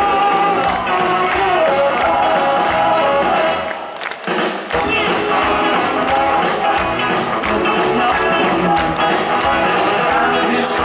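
Live rock and roll band with a saxophone section, electric guitars and drums playing loud, with a short break where the band drops out about four seconds in before coming back in full.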